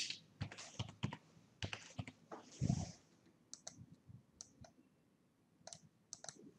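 Faint computer keyboard typing and mouse clicks, a scatter of short irregular clicks, as a short answer is typed into a text box. About halfway there is one louder, duller bump.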